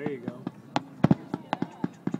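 Fireworks going off in a quick, irregular string of sharp pops, the loudest about a second in, with a voice heard briefly at the start.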